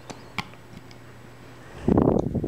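Faint clicks of a plastic loom hook catching rubber bands on the Rainbow Loom's plastic pegs, over low room hiss. Near the end comes a louder rustling bump of handling.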